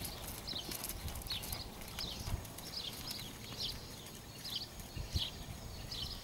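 Hoofbeats of a ridden horse on a sand arena surface: soft, dull thuds in an uneven rhythm.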